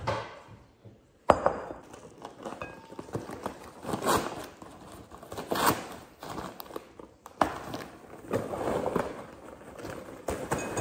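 A sharp knock about a second in, then a popcorn bag being handled, crinkled and opened, and popped popcorn pouring into a glass bowl near the end.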